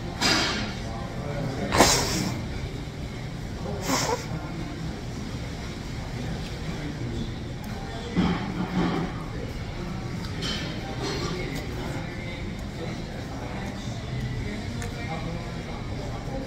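A person blowing his nose into a tissue: three short, noisy blows in the first four seconds, the second the loudest, over background music and chatter.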